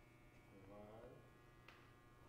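Near silence: a faint steady electrical hum and buzz, with a faint distant voice briefly about halfway through.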